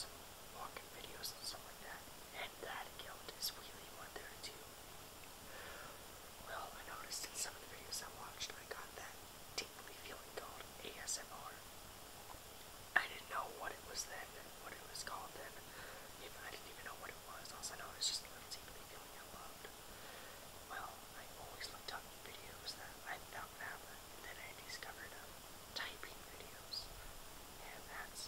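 A person talking in a whisper, a steady flow of breathy, unvoiced words with sharp hissing s sounds.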